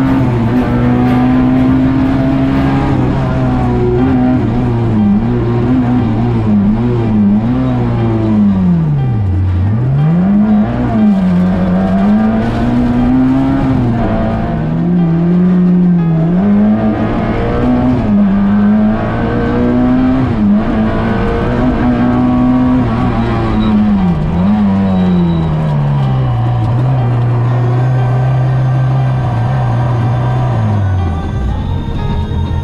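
Rally car engine heard from inside the cockpit, driven hard on a stage: the revs climb and fall again and again through gear changes and lifts for corners, with a couple of deep drops. The engine settles into a steadier, lower note near the end.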